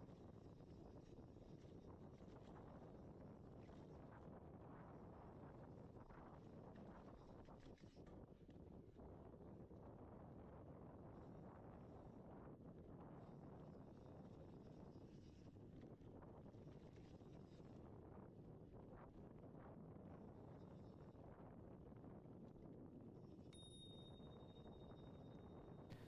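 Near silence: faint, steady wind and rolling noise from a bicycle descending a dirt trail. A faint high tone comes in during the last two seconds.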